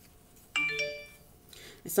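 A short electronic chime of several tones, sounding once about half a second in and fading away within about half a second.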